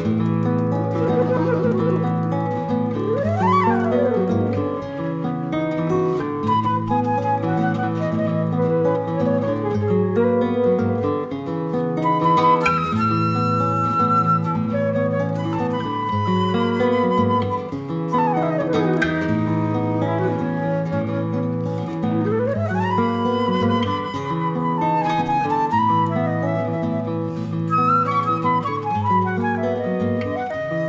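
Transverse flute playing a lively melody with several fast rising and falling runs, over acoustic guitar accompaniment with a steady plucked bass line and chords.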